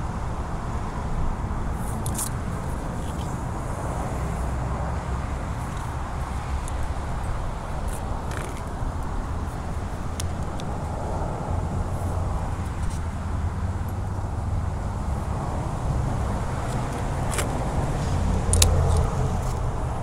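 Steady low outdoor rumble, with a few light clicks as rubber-jacketed copper cables are shifted by hand in a metal bin.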